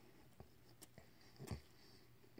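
Faint chewing of a mouthful of breakfast egg sandwich, with a few soft mouth clicks and one louder thump about one and a half seconds in.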